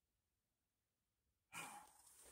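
Near silence, then about a second and a half in a man lets out a breathy sigh.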